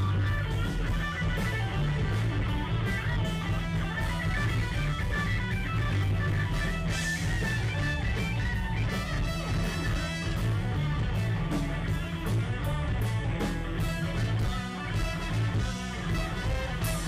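Live rock band playing: electric guitar, bass guitar and drums, with regular cymbal hits over a strong bass line.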